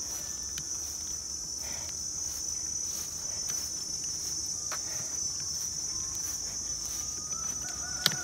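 Steady, high-pitched drone of insects chirring in tropical grass, unbroken throughout, with a few soft footfalls or rustles in the grass.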